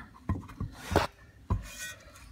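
A few short metallic scrapes and knocks, the sharpest about a second and a half in with a brief ring, from a Mercedes W126 prop shaft and its sliding spline joint being handled.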